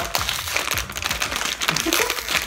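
Plastic snack bag crinkling as it is gripped and pulled at its sealed top, the seal holding and not tearing open.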